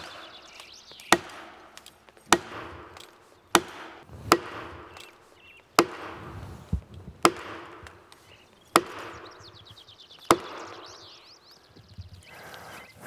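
An axe striking plastic felling wedges in the back cut of a large spruce, nine heavy blows about every one and a half seconds, each with a short ring after it. The wedges are being driven in to lift a back-leaning tree over toward the felling direction.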